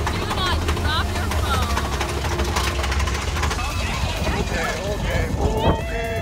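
Big Thunder Mountain Railroad mine-train roller coaster running along its track: a steady heavy rumble with rattling clicks and wind on the microphone, riders' voices over it and a loud burst of shouting near the end.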